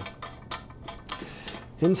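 A few faint metallic clicks and handling noise as a steel air separator and its brass fittings are handled, the clearest click about half a second in, followed by a soft rubbing hiss.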